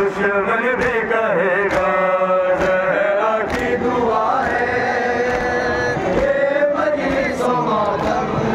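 Men chanting a noha (Shia lament), one lead voice through a handheld microphone with others joining on long held lines. A faint regular beat about once a second, typical of matam chest-beating, keeps time.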